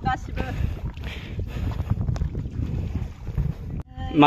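Wind buffeting the microphone outdoors, a low uneven rumble, with faint voices in the background and a brief voice near the start.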